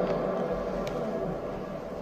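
A pause in a man's speech: low room tone that slowly fades, with a faint click about a second in.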